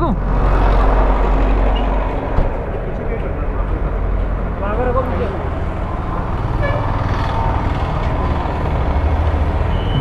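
Busy street traffic with a deep engine rumble from a heavy vehicle, strongest in the first two seconds and again near the end, and a sharp knock a little over two seconds in.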